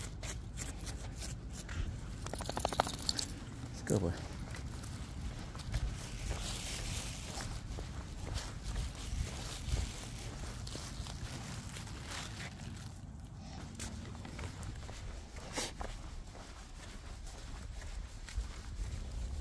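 Scattered light footsteps, small clicks and rustling from a person walking a small dog on grass and pavement, with one short low voice sound about four seconds in.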